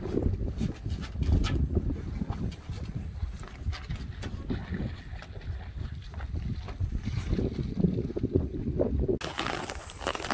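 Wind buffeting the microphone, an uneven low rumble that rises and falls, with a few light taps over it.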